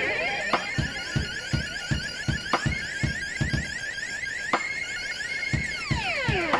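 Synthesizer playing a fast, repeating high-pitched alarm-like sequence over a steady drum-machine kick of about two and a half beats a second, with a sharp hit every two seconds. Near the end the synth's pitch sweeps steeply downward.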